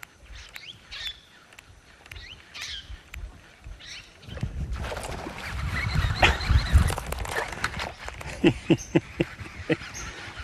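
Birds chirping in short calls. About four seconds in, a louder rushing noise with a low rumble takes over, and a few sharp clicks come near the end.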